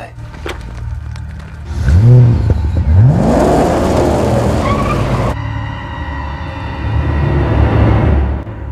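Police patrol car's engine revving up twice and accelerating away, its tyres spinning on gravel. The tyre hiss cuts off suddenly about five seconds in, leaving a lower steady hum.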